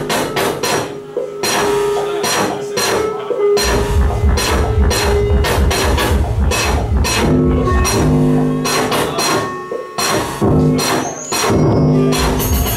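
Live electronic music on synthesizers and drum machines: a steady beat of sharp percussive hits over sustained synth tones. The deep bass is missing for the first three seconds or so, then comes back in, and drops out again briefly near the end.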